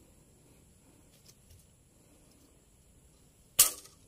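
A taut marking string (chalk line) snapped once against a coconut palm log to mark a straight cut line: a single sharp crack about three and a half seconds in, after a few faint ticks.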